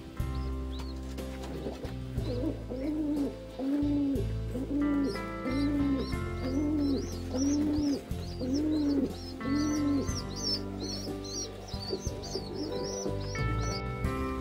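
Domestic pigeons at the nest over soft background music. A low, arching call repeats about eight times, roughly once every two-thirds of a second, and thin high squeaks of begging squabs come in rapid succession during feeding.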